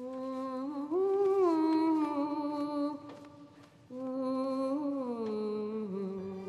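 A voice humming a slow, wordless tune in two long, held phrases. The pitch steps up about a second in, and the second phrase slides down near the end.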